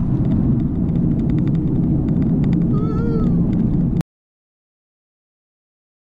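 Loud wind, road and engine noise inside a 2017 Honda Civic's cabin at around 130 mph as the car slows, with a short rising-and-falling squeal about three seconds in. The sound cuts off abruptly about four seconds in.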